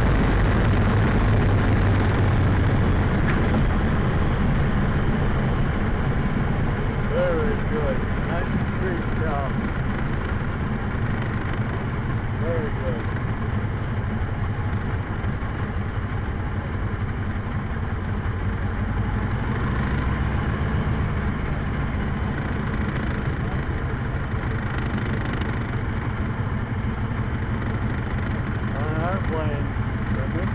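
Open-cockpit biplane's piston engine and propeller running at low power as the plane rolls along the runway, with wind rushing over the cockpit. The engine gets a little quieter over the first dozen seconds.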